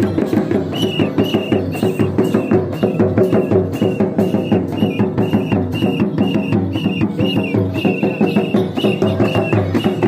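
Santali folk dance music: barrel-shaped hand drums played in a fast, driving rhythm. From about a second in, a short high note repeats roughly twice a second above the drumming.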